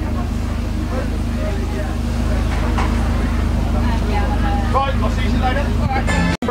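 Gardner diesel engine of a vintage Scammell lorry idling steadily, with voices in the background.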